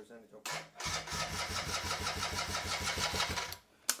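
Electric starter cranking a Suzuki underbone motorcycle's engine, a steady rapid pulsing of about eight beats a second for nearly three seconds that stops without the engine catching: the fuel tank is empty.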